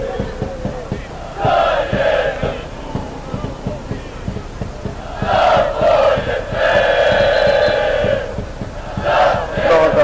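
Football supporters chanting together from the terrace in several bursts, the longest from about five to eight seconds in, with crowd noise between.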